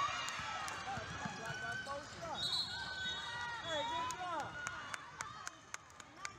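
Basketball sneakers squeaking on a hardwood gym floor amid players' voices, with a steady, high referee's whistle blast for about a second roughly halfway through. A basketball is then bounced on the hardwood, about three bounces a second, near the end.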